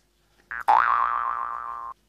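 A cartoon-style 'boing' sound effect: a short blip, then a springy pitched tone whose pitch wobbles and then holds steady, fading a little before it cuts off suddenly.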